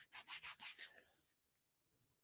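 Faint rubbing of a person's palms together: a quick series of light scraping strokes, about six a second, stopping after a little over a second.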